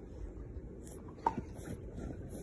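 Light rubbing and scuffling of a dog squirming on its back against a plush dog bed, with one sharp click a little over a second in.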